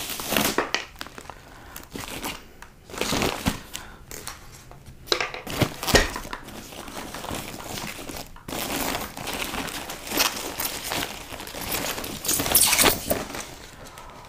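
Clear plastic bag crinkling and rustling in irregular bursts as a motorcycle helmet is pulled out of it, with one sharp knock about six seconds in.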